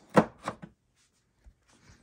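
A sharp knock followed by two softer taps as a hand handles the 3D-printed plastic fuselage of an RC model airplane, pressing on its hatch. Then it is nearly silent.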